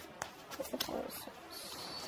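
A bird calling in the background, with a few light clicks.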